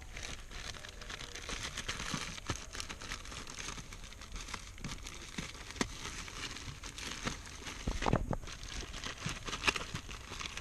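Thin plastic wrapping crinkling and crackling as a new pleated cabin pollen filter is handled and pulled from its packaging. About eight seconds in there is a dull thump.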